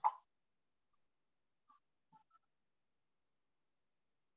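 Near silence, with the end of a short spoken 'mm-hmm' right at the start and a few faint ticks about two seconds in.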